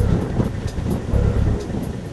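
Hurricane-force wind gusting on the microphone: a loud, even rushing noise with heavy low rumbling blasts at the start and again about a second in.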